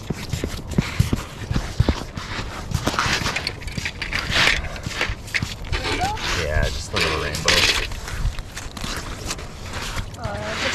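Boots crunching and scuffing on wet, slushy ice, with scattered knocks and clicks from handling the rod and rig.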